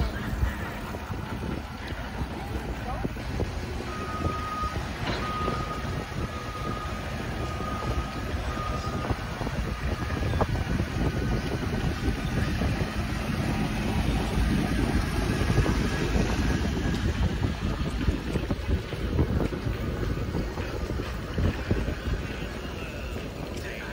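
Wind buffeting a moving phone microphone during a bicycle ride, a steady gusty rush heaviest in the low end. A thin high tone comes and goes in short dashes a few seconds in.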